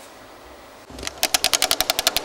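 DJ scratching a record on a turntable. About a second in, the scratch starts as a fast stutter of sharp cuts, about a dozen a second, chopped by the mixer's fader.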